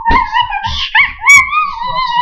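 A long, high, wavering howl-like vocal note with a short break about a second in, over soft thumps about three a second.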